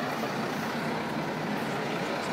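Steady street ambience of a busy outdoor square: a continuous wash of crowd and traffic noise with no single event standing out.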